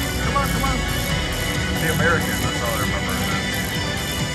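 Casino Royale themed slot machine playing its game music and win sounds as wins tally up, over a steady casino din with voices in the background.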